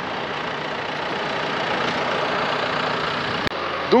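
Farm tractor engine running steadily as it pulls a loaded flatbed trailer across a field, with a dense rushing noise over it; it breaks off abruptly about three and a half seconds in.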